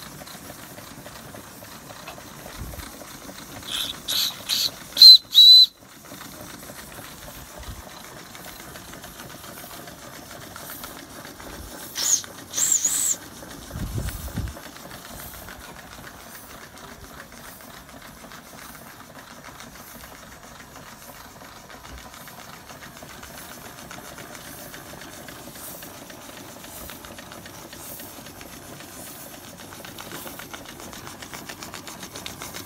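Vintage tinplate toy steam engines running with a steady hiss of escaping steam. A boiler's steam whistle gives four or five short shrill blasts about four to six seconds in, then two more short whistles around twelve seconds.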